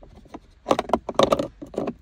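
A quick run of hard plastic knocks and rattles as a smart key fob is handled and set into the car's centre-console cup holder key slot, starting just under a second in and stopping near the end.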